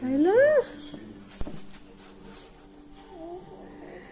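A single short meow-like cry that rises and then falls in pitch, loudest at the very start, followed by a faint click about a second and a half in.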